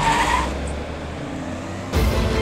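An ambulance van and an emergency response car pulling away fast on a dusty road: engines and tyres, with a short high squeal at the start, then a steady rumble that eases off.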